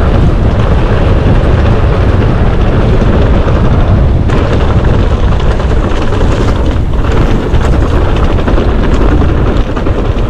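Wind buffeting the microphone and tyres rumbling over a trail during a fast mountain-bike descent: a loud, dense, steady roar, with brief dips about four and seven seconds in.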